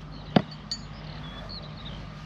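A thrown axe strikes a wooden target board: one sharp thunk about a third of a second in, followed by a faint click.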